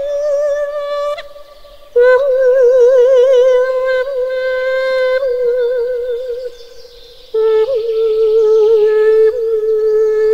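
A man's wordless solo voice singing long held notes with a wavering vibrato, in three phrases that each sit a little lower in pitch than the one before, with short breaths between them about two seconds in and near seven seconds.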